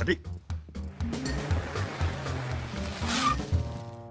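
Cartoon soundtrack: background music with a pulsing bass line under a rushing, hissing sound effect, which swells into a brief swish shortly before a scene cut. A few sharp clicks come at the very start.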